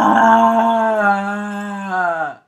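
A woman's long, drawn-out "uhhh" groan of dismay, held on one steady pitch and sagging lower as it trails off at the end. It voices her disappointment that the trailer is already over.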